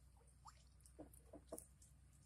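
Near silence, with a few faint, short wet sounds of hands and a knife working a raw, skinned weasel carcass.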